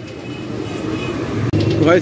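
Busy street background: a steady hum of traffic and crowd noise with faint voices in it. A man's voice starts up near the end.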